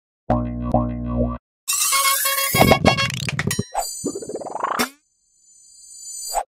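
Opening sting of playful electronic music and cartoon sound effects, in several short separate bursts with sweeping pitch glides. It breaks off briefly about five seconds in, then a high ringing tone swells up near the end.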